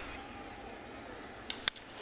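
Steady murmur of a ballpark crowd, with a faint click and then a sharp crack of a bat meeting the ball near the end, on a high fly ball.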